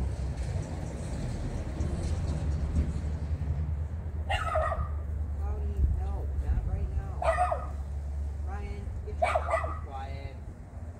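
A dog barking three times, a few seconds apart, over a steady low rumble.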